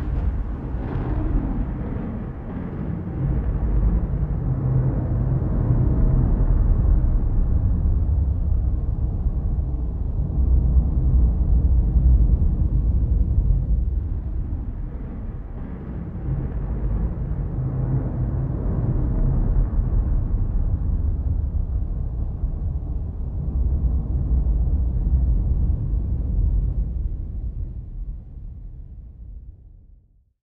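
A deep, low soundtrack rumble, a drone that swells and eases in slow waves and fades out near the end.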